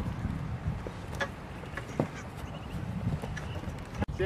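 Footfalls of people running on grass over a low rumble of wind on the microphone, with a few sharp knocks, the clearest about two seconds in.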